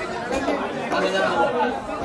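Several people talking at once: unintelligible background chatter of voices.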